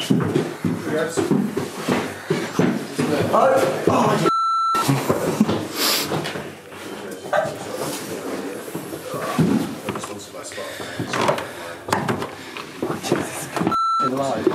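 Indistinct voices of people talking as they move along a narrow corridor. A short, steady high beep cuts in about four seconds in, and another comes at the very end.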